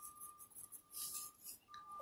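Faint pencil-and-paper sounds: a pencil hatching very lightly on paper and the sheet being turned on the desk, the loudest of it about a second in. A faint steady high whine sits underneath.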